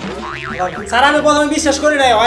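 A comedic cartoon-style sound effect with a rapidly wobbling pitch, then, about a second in, a louder held pitched sound over background music.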